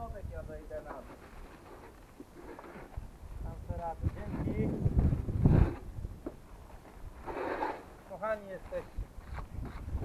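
Indistinct voices of people talking at a distance, with wind rumbling on the microphone. The loudest moment is a gust of wind about five seconds in.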